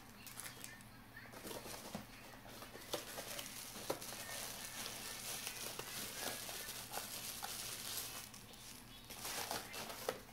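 Plastic packaging crinkling and rustling as a camera body is unwrapped from its protective bag by hand, with small scattered clicks.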